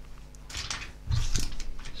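Close handling noise of hands gripping and turning a phone: scuffing and rubbing with a few small clicks and a soft knock just after a second in.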